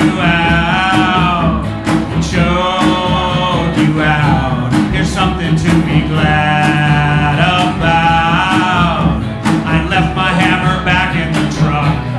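A live rock song: a male singer sings long, drawn-out phrases over electric guitar accompaniment.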